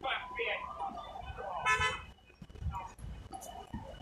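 Quiet background voices from a distance, with a brief pitched call or toot just before the two-second mark.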